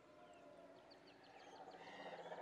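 Near silence: faint background ambience with a few short high chirps, and a low hum building slightly toward the end.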